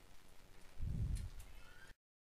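Handling noise from a handheld camera: a brief low rumbling thud about a second in, then a few faint clicks, before the sound cuts off to dead silence just before the end.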